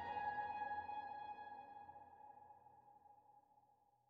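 Background relaxation music ending: held tones dying away steadily into silence over about three and a half seconds.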